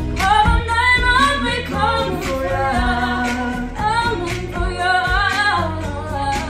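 Young female and male voices singing a pop duet melody over a backing track with bass and a steady beat.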